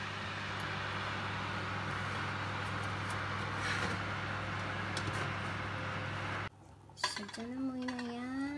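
Steady hum and whir of an oven's convection fan as a metal muffin tray is pulled out on its rack, with a brief metallic clatter about four seconds in. The sound cuts off suddenly after about six and a half seconds.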